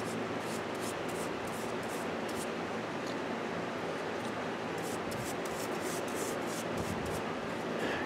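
Bristle paintbrush dipped into a small can of semi-gloss polyurethane varnish and worked over the carved wood: soft, irregular rubbing strokes over a steady low hum.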